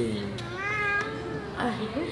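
A toddler's high-pitched, drawn-out vocal call, one call a little under a second long starting about half a second in.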